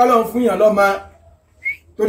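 A man chanting a sung recitation for about the first second, then breaking off. In the pause near the end comes a single short, high whistle-like chirp.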